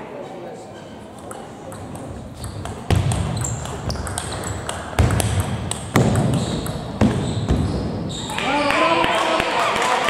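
Table tennis rally: a celluloid or plastic ball ticking off bats and table in a run of sharp clicks, with several heavy thuds in the middle of the rally. Voices take over near the end as the point finishes.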